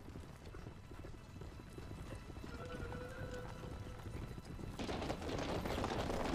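Anime soundtrack of horses' hooves galloping, with music underneath; the hoofbeats and music grow suddenly louder about five seconds in.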